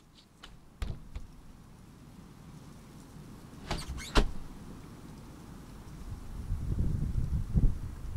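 Handling noises inside a car: a few sharp clicks near the start, a quick cluster of clacks about four seconds in, then a low rumble that builds toward the end.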